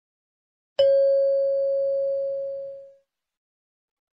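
A single chime struck once about a second in, a clear bell-like ding that rings and fades away over about two seconds. It marks the end of the listening-test dialogue before the question is repeated.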